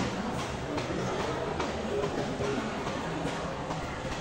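Indoor mall ambience: footsteps on a tiled floor about twice a second, over a low wash of distant voices and faint background music.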